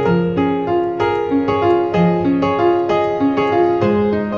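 Grand piano playing solo: a steady figure of repeated notes, about three a second, over a low note that changes roughly every second.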